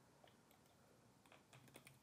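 Faint keystrokes on a computer keyboard: a few scattered clicks, coming closer together in the second half.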